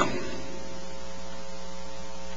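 Steady electrical mains hum: an even buzz made of several fixed tones that does not change.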